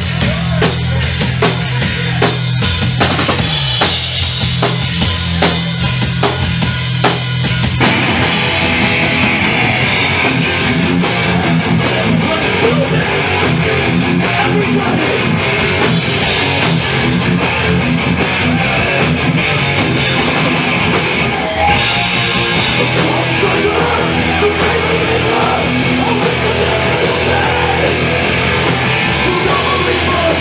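Live thrash metal band playing at full volume. For about the first eight seconds drums pound over a low held note, then distorted guitars crash in and the full band plays on.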